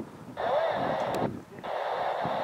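A man's voice coming over a radio, thin and narrow-sounding, in two bursts, with wind rumbling on the microphone.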